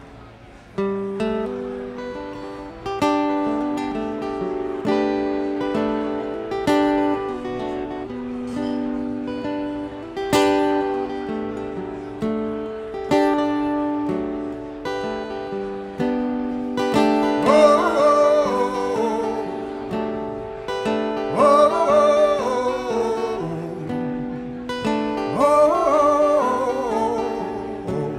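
Slow live folk song: acoustic guitar chords over held accordion notes, starting about a second in. A man's singing voice comes in about two-thirds of the way through.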